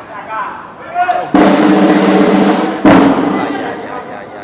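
Loud drumming in two bursts: the first starts suddenly about a second and a third in and lasts about a second and a half, and the second follows at once and fades toward the end. Shouting voices are heard before the first burst.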